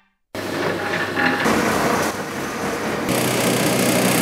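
Bakery dough machinery running, a dense steady mechanical noise that cuts in abruptly after a brief silence, with a brighter hiss joining about three seconds in.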